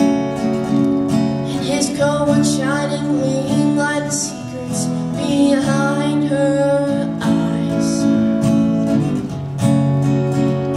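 Acoustic guitar strummed steadily, with a young female voice singing a western ballad over it from about two seconds in.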